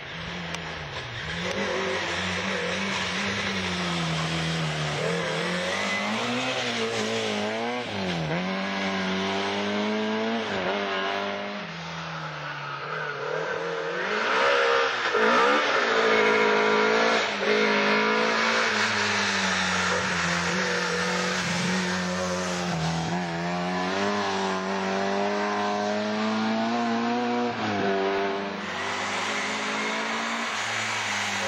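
Rally car engine at full throttle, with revs climbing and dropping sharply again and again through gear changes and lifts as the car passes close by. The loudest pass comes about halfway through.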